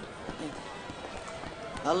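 Hurried footsteps of hard-soled shoes on cobblestones, faint over a steady background hiss. A woman's voice exclaims near the end.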